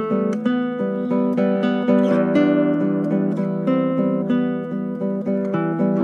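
Cort AC160CFTL-NAT thin-body nylon-string classical guitar played unplugged, a fingerpicked passage with notes ringing over one another. Heard acoustically, without its pickup, its tone is somewhat dry: the thin body makes it a guitar meant mainly to be played plugged in.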